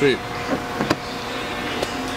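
Small electric fuel transfer pump of an RV fuel station running with a steady hum, with a sharp click about a second in and a fainter one near the end.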